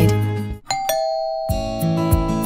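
The background music fades out, then a two-note doorbell chime rings out, a higher note followed by a lower one. About a second and a half in, new acoustic guitar music starts.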